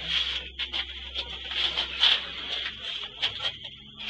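Irregular rubbing and scraping with light knocks, the noise of someone moving and handling the camera in a cramped metal turret.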